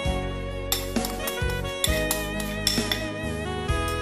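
Instrumental background music with a melody.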